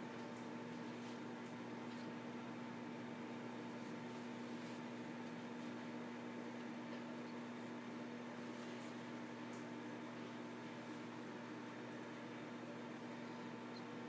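Microwave oven running on high: a steady, fairly quiet hum with a few held tones that do not change.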